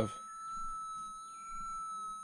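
QED pulse-induction metal detector's threshold tone: one steady, high, unbroken hum. With the ground balance set to 225, the tone holds level over the ground, a sign the ground signal has been balanced out.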